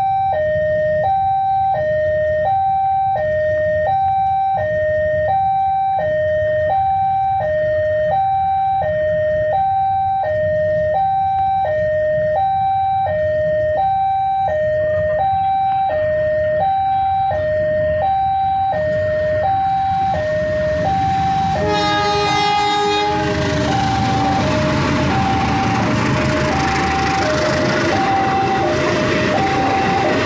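A railway level-crossing warning bell sounds a steady alternating two-tone ding-dong, meaning a train is about to pass. About 22 seconds in, a diesel locomotive's horn gives one short blast, and then the train runs through the crossing with a loud rushing rumble of wheels on rails while the bell keeps sounding.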